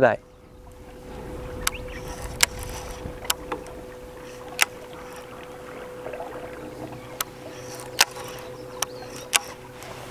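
A bass boat's bow-mounted electric trolling motor running with a steady hum and a thin whine. About ten sharp clicks and knocks are scattered through it.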